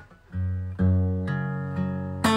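Acoustic guitar played solo: the ringing chord is cut off at the very start, there is a brief silence, and then notes are picked about every half second, each led by a low bass note.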